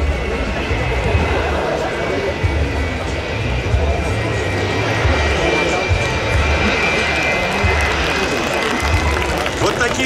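Twin-engine Sukhoi Su-57 fighter taxiing at low power, its jet engines giving a steady high whine. Crowd voices and background music mix in, and wind buffets the microphone in low rumbles.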